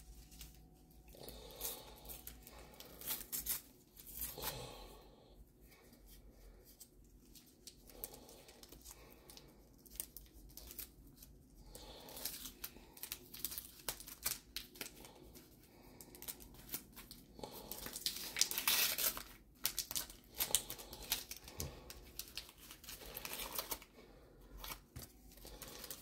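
Paper sticker packets being torn open and their contents handled: irregular tearing and crinkling rustles, heaviest about two-thirds of the way through.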